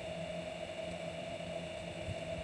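Steady faint hum with a few held tones over a low background hiss, with no distinct events: room tone.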